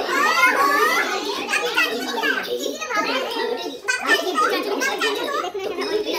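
A young child's high voice and adults talking over one another, the child's voice rising in pitch in the first second.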